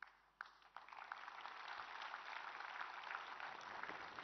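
Audience applauding: a faint, steady patter of many hands clapping that starts about half a second in.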